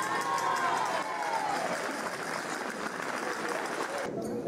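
Audience applauding and cheering as a folk dance ends, with one long falling shout near the start.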